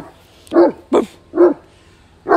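A Saint Bernard barking: three short barks about half a second apart.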